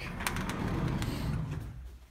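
Fabric rustling: hanging clothes brushing against the handheld camera as it moves through a closet, a steady rustle for about a second and a half that then fades.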